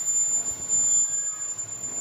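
A steady high-pitched whine holding one pitch throughout, over a faint even background hiss.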